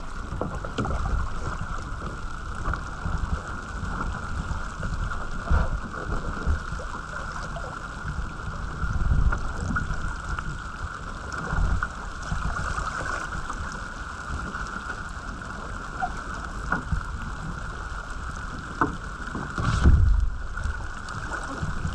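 A sailing dinghy under way: wind buffeting the microphone in uneven gusts over the wash of water along the hull, with scattered small taps and splashes.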